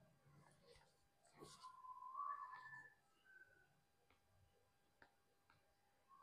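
Near silence: faint room tone, with a brief faint sound about two seconds in.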